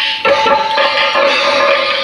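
Loud Indian dance song: held melodic notes over rhythmic hand-drum beats.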